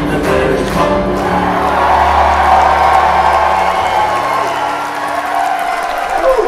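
An Irish folk band of acoustic guitar, banjo and keyboard strums into a final chord and holds it for a few seconds as the song ends. The audience breaks into applause and cheering over it.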